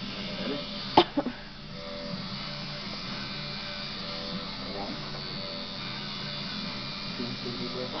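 Steady electric buzz of a tattoo machine running in the shop, with music playing in the background. A sharp knock about a second in.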